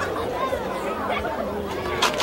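Background chatter of many voices talking over one another, indistinct and quieter than the speech around it.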